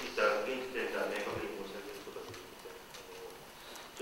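A man speaking into a handheld microphone, his speech thinning out into a pause about halfway through.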